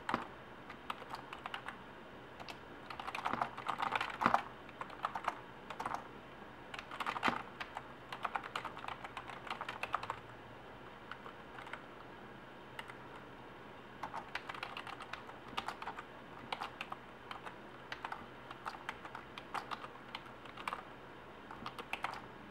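Typing on a computer keyboard: bursts of quick keystrokes, with a pause of a few seconds in the middle.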